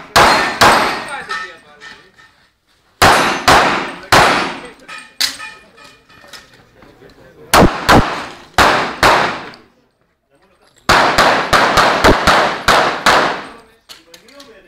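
Pistol shots fired in four strings of rapid fire, each shot with a ringing echo. The last string is the fastest, about nine shots in a little over two seconds.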